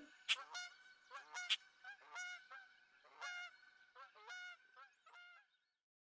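A series of short honking calls, about a dozen, growing fainter and dying away before the end.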